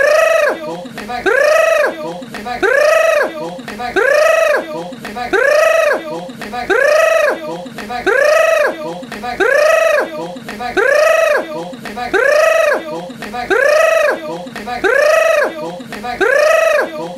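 A short high-pitched vocal cry that rises and falls in pitch, repeated identically about once a second as a loop.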